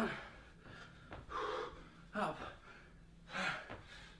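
A man breathing hard and gasping from exertion mid-workout, with two heavy breaths about two seconds apart, and a short spoken 'up' between them.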